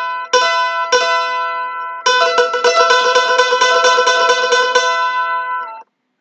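Mandolin sounding a double stop, the open E string together with the B at the second fret of the A string, a fourth apart, picked with a thin pick. Two single strokes ring out, then the pair is tremolo-picked quickly for about three seconds and rings briefly before stopping near the end.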